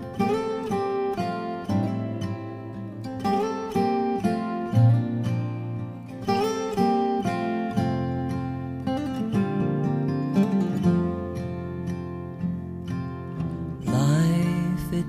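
Acoustic guitar playing a gentle instrumental passage in the song's opening: plucked notes ringing over low bass notes.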